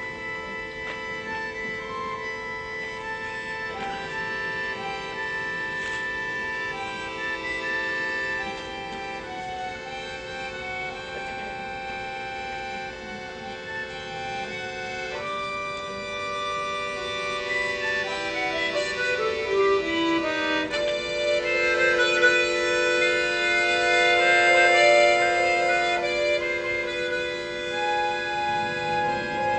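Classical bayan (chromatic button accordion) played solo: sustained chords that change every few seconds, then a quick falling run of notes about two-thirds of the way through, followed by louder, fuller chords.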